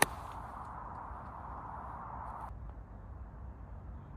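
A golf club striking the ball: one sharp click right at the start, over a steady outdoor hiss that cuts off suddenly about two and a half seconds in.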